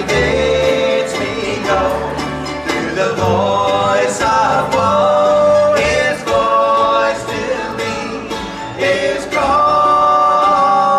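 Acoustic trio of guitar, mandolin and upright bass playing a slow bluegrass-style gospel tune, with plucked notes over a walking bass. Men's voices sing held harmony notes near the end.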